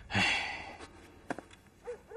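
A person sighs: one breathy exhale of about half a second at the start, fading away, followed by a few faint clicks.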